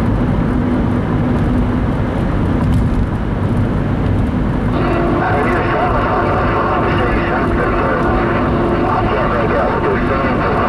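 Road and engine noise inside a moving car. About halfway through, a CB radio speaker cuts in with distorted, garbled voices and steady tones.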